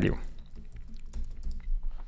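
Typing on a computer keyboard: a run of quick, irregular key clicks as a line of code is typed.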